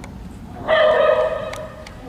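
A single loud, high-pitched vocal call, held for about a second, starting a little under a second in.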